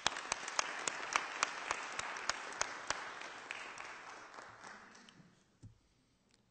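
Audience applauding, with a few sharp claps close by standing out. The applause dies away about five seconds in.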